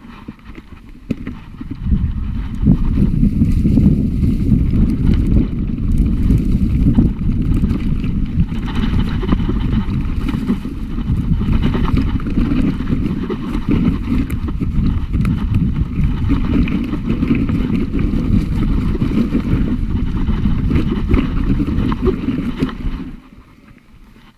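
Mountain bike descending a rough dirt and grass trail: tyres rumbling and the bike rattling and knocking over the bumps, with heavy low buffeting on the handlebar camera's microphone. It starts about two seconds in and stops near the end as the bike pulls up.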